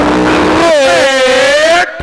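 A man's long, drawn-out vocal shout, held without a break and rising in pitch about halfway through: a cricket commentator stretching out his 'ṭhā' call for a big hit.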